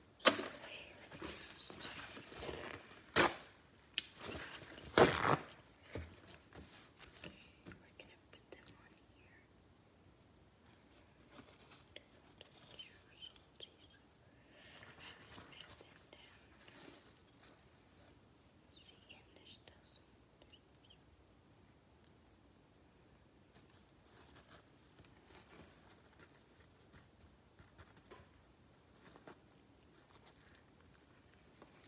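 Handling noises at a kitchen counter: a few sharp knocks and clatter in the first six seconds, then faint, intermittent rustling of a paper towel.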